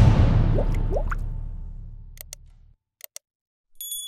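Intro logo sound effect: a loud hit that rings and fades out over about two and a half seconds, with a few short rising blips in the first second, then a couple of faint clicks.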